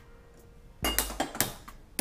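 Two metallic clanks about half a second apart, with a little ringing: an aluminium cooking pot knocking against the gas stove as it is handled.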